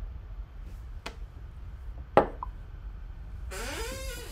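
A glass tumbler set down on a wooden desk: a faint click about a second in, then one sharp knock a little past two seconds, over a steady low room hum. A short voiced sound follows near the end.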